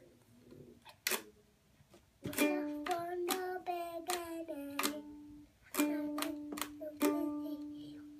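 Small ukulele strummed in single strokes, each chord left ringing: one strum about a second in, then a run of strums about every half second, a short pause, and a second run.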